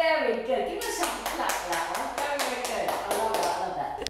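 Hands clapping in a quick, even rhythm, about five claps a second, starting about a second in, with laughing voices under it.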